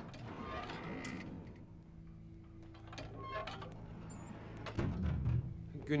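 Quiet background score holding low sustained notes, with a few soft knocks and thuds, such as a door and footsteps as someone enters.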